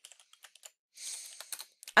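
Computer keyboard typing: a few light keystrokes, then a short soft hiss about a second in.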